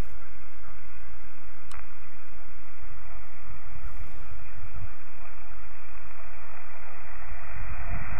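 Band-noise hiss from a Yaesu FT-817ND transceiver's speaker, held within the receiver's narrow audio passband, with wind rumble on the microphone. The hiss grows louder near the end as the motor-turned capacitor brings the 17 m magnetic loop toward resonance.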